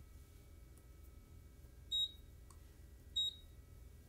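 ProtoTRAK RMX CNC control beeping as its keys are pressed: two short high beeps, a little over a second apart, the first about halfway through.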